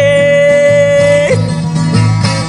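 A woman singing in the Brazilian caipira folk style, holding one long high note for about a second and then sliding down from it, over an instrumental accompaniment.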